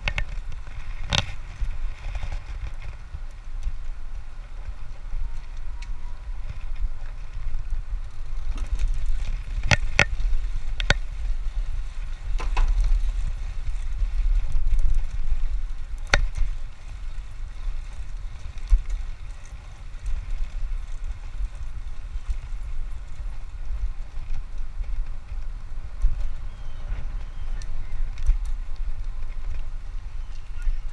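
A road bike rolling along a paved path, with wind rumbling on the microphone. A few sharp clicks come from the bike, about a second in and several more around the middle.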